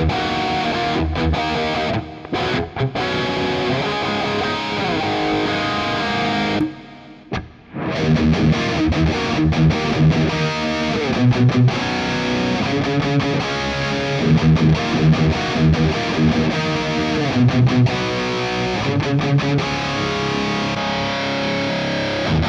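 Distorted electric guitar played through a Kemper Profiling Amp on profiles of Diezel amplifiers, first the Herbert, then the VH4's third channel. The playing stops briefly about seven seconds in, then the riff resumes.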